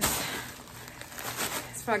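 Rustling handling noise as an ice pack and the phone are moved about close to the microphone. It is loudest at the start and fades within about half a second into fainter rustles and light ticks.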